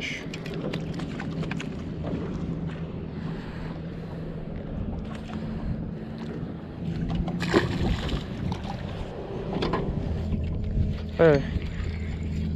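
Handling noise as a hooked lizardfish is unhooked by hand on a boat: small clicks and knocks over a steady low motor hum, with one sharp, loud knock about seven and a half seconds in.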